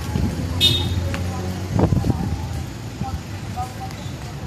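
Street ambience: a vehicle engine runs low and steady for about the first two seconds, then fades. Background voices of people are heard, with a brief high chirp about half a second in.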